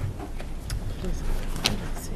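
Quiet meeting-room background: a steady low hum with a few soft clicks and rustles of paper being handled, and faint murmured voices.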